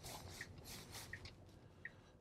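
Quiet Tesla cabin on the move, with three faint ticks about 0.7 s apart from the turn signal indicator, switched on for an upcoming right turn.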